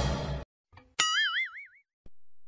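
Background music cuts off just after the start; about a second in comes a cartoon 'boing' sound effect, a sharp pluck followed by a springy tone whose pitch wobbles up and down for under a second.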